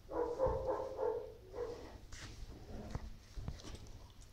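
A young animal calling: a quick run of about four short pitched cries lasting about a second and a half, followed by a brief hissy noise and a few soft knocks.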